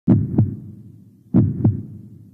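Heartbeat sound effect: two slow lub-dub double thumps, deep and loud, the second pair a little over a second after the first.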